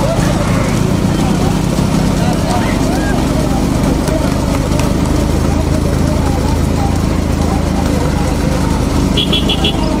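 Bullock-cart race on a paved road: a motor vehicle engine running steadily close by, with voices shouting over it and the galloping bullocks' hooves and cart wheels on the tarmac. Four quick high beeps sound near the end.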